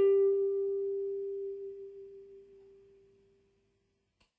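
A single electric guitar note is plucked and left to ring, fading out smoothly to silence over about three seconds.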